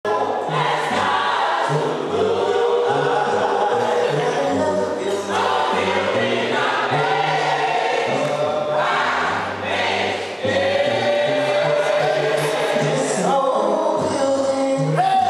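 Gospel choir singing in harmony, with several voice parts holding sustained chords over low notes that change every half second or so.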